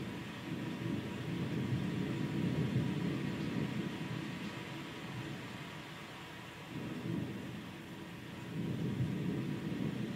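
Low rumbling from a video-art soundtrack played over a lecture hall's speakers. It swells twice, early and again near the end, over a steady hiss.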